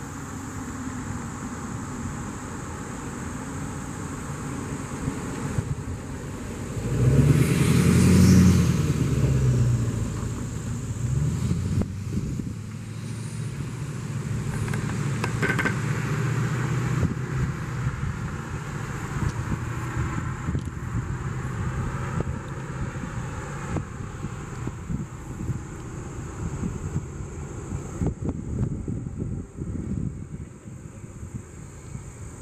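A road vehicle passing close by, loudest about seven to ten seconds in, its engine note rising and then falling. Steady outdoor background noise runs under it, with a faint steady high whine that stops near the end.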